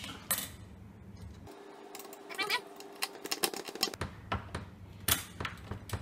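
Light metallic clicks and clinks as a metal spring scale's hooks and ring are handled against a screw on a plywood board, coming in quick irregular ticks that grow busier after about two seconds.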